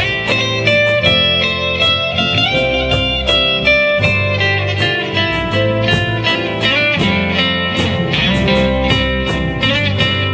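Live acoustic band playing an instrumental passage: an electro-acoustic guitar picks a melodic lead over a strummed second acoustic guitar, with bass underneath and a steady rhythm.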